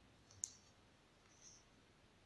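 Near silence, with one faint short click about half a second in and a fainter soft brush about a second later, from a metal crochet hook working a slip stitch through yarn.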